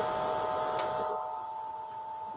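A steady hum made of a few held tones, with one short click a little under a second in.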